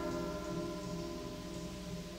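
Live rock band's guitars holding a chord that rings on steadily, several notes sounding together and fading slightly, with no new strums. Heard through a cassette audience recording.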